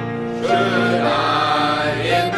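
A church choir singing a hymn in parts, with long held notes; a new chord begins about half a second in.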